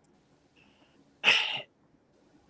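A man's single short, breathy burst of air, a sharp sniff, snort or sneeze-like sound lasting under half a second, a little past halfway.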